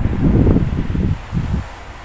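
Wind buffeting the phone's microphone in gusts: a loud low rumble, strongest in the first second, with one more short gust before it eases off.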